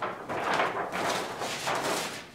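Large paper sheets rustling as a long, multi-page sheet-music score is unfolded and spread out by hand.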